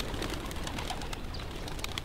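Young Adana pigeons fluttering up off the ground on short first flights, a scatter of quick sharp wing flaps and ticks over a steady low rumble.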